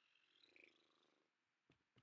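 Near silence: quiet room tone, with a faint soft sound about half a second in and two small clicks near the end.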